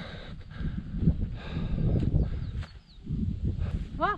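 Wind buffeting the microphone on an exposed hilltop, a gusting low rumble, with a few faint high bird chirps around the middle.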